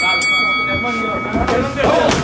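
Boxing ring bell struck a few times in quick succession to start the round, ringing on for nearly two seconds with its higher overtones dying away first.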